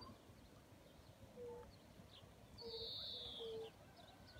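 Faint calls of distant birds: a few short low notes, and about two-thirds of the way in one longer high whistle that falls slightly in pitch.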